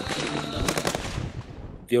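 A rapid burst of automatic gunfire about half a second to a second in, over a noisy background with faint voices; the noise fades away toward the end.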